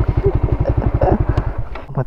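Suzuki Raider 150 Fi's single-cylinder four-stroke engine idling with a quick, even beat, then switched off about one and a half seconds in.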